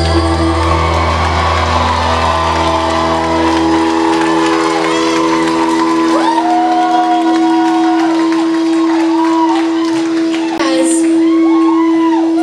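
A rock band's last chord rings out on electric guitars and bass. The low end fades over the first few seconds while a held note sustains almost to the end. A concert crowd cheers and whoops throughout, louder near the end.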